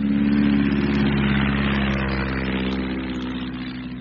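A steady engine drone laid in as a sound effect: a low hum with a hiss above it, swelling in just before and holding level, easing slightly near the end.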